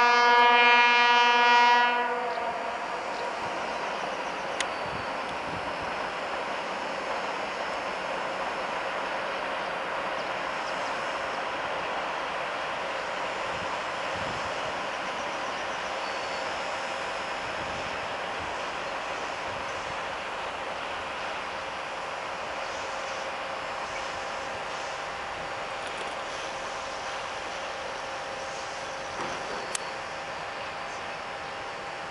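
The horn of a PKP ST44 (M62-type) diesel locomotive blows one loud, steady single-pitched blast that stops about two seconds in. After it comes the locomotive's two-stroke V12 diesel engine, running with a steady drone as it brings a freight train toward the crossing.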